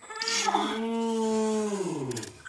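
A long hummed "mmm" from a person kissing, held on one pitch for over a second and dropping in pitch at the end.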